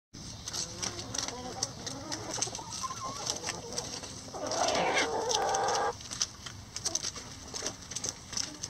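A flock of Rhode Island Red and barred hens clucking softly while pecking and tearing at banana leaves, with many sharp beak ticks and leaf rustles. About halfway through, one louder, drawn-out chicken call lasts about a second and a half and stops abruptly.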